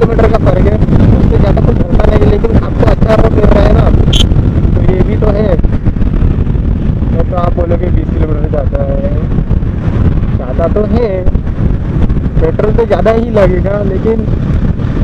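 Yamaha R15 V3 motorcycle cruising at highway speed, its engine mixed with a loud, steady rush of riding wind on the rider's action-camera microphone.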